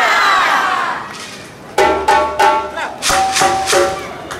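Shouted calls from performers in a torch-and-drum show: a long cry falling in pitch, then, after a short lull, a run of short, sharp-edged pitched calls and one held note near the end.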